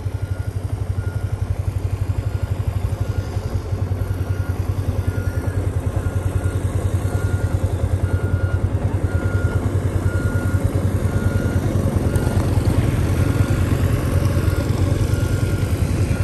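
Motorbike engine running steadily as it is ridden slowly, with wind on the microphone. A faint high beep repeats about twice a second throughout.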